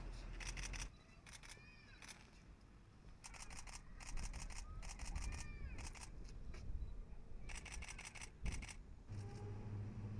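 Several short bursts of rapid camera shutter clicks, each run lasting under a second, as photographers shoot in continuous mode.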